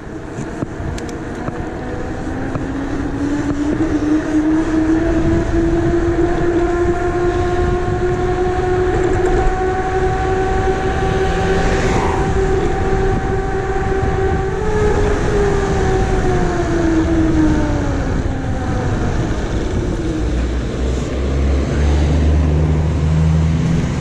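E-bike rolling fast downhill at high speed: a steady hum from the spinning wheels that rises as the bike gathers speed, holds, then falls away as the rider brakes hard from about 50–60 km/h down to a stop, over a rush of wind and tyre noise. A lower rumble takes over near the end once the bike has stopped.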